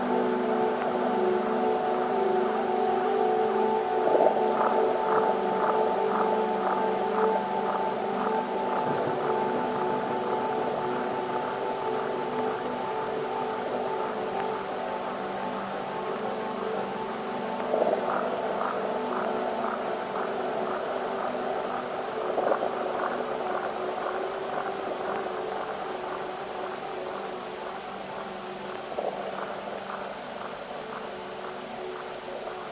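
Ambient electronic music: layered sustained drone tones with a soft pulse higher up about twice a second and a few gentle swells, slowly getting quieter.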